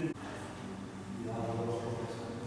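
Indistinct voice in a small room, with a drawn-out voiced sound in the second half, over steady room noise.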